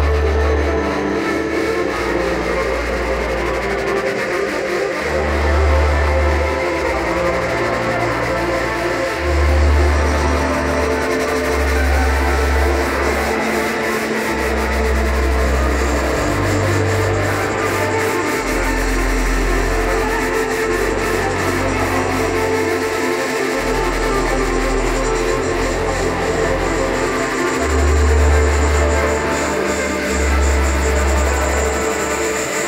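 Live ensemble music for saxophone, electric guitar and keyboards, over deep bass notes that each hold for a second or two before changing pitch.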